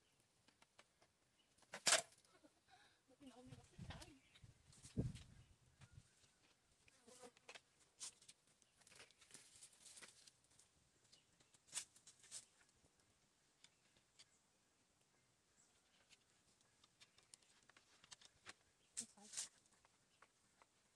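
Near silence with scattered faint clicks and knocks. The sharpest click comes about two seconds in, and two more come near the end.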